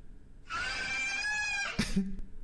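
Caracal giving one long, high-pitched, scream-like call starting about half a second in, its pitch rising slightly, with a sharp click near the end.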